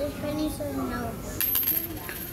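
A light clink about one and a half seconds in, followed by a brief, thin, very high ringing like a small metal object dropping, over faint background voices.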